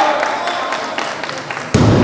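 Crowd noise in a hall while a lifter holds a barbell overhead, then, near the end, a heavy thud as the loaded barbell with bumper plates is dropped onto the wooden lifting platform after a completed clean and jerk.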